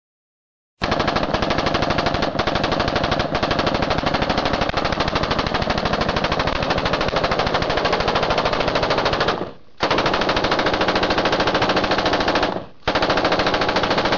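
A loud, rapid rattle of sharp bangs at about a dozen a second, starting just under a second in and running in long bursts. It breaks off twice near the end and resumes each time.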